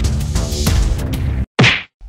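Fight-scene hit sound effect: background music with a few short strikes runs until it cuts off abruptly, then one loud, sharp whack about one and a half seconds in.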